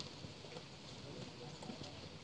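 Faint, irregular footsteps of a column of soldiers' boots on a paved road, with faint voices in the background.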